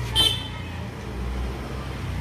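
Street traffic: a motor vehicle's engine running with a steady low rumble. A brief high-pitched tone sounds just after the start.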